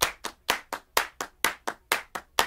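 Electronic dance background music in a breakdown: the bass and other parts drop out, leaving a run of evenly spaced hand-clap hits, about four or five a second.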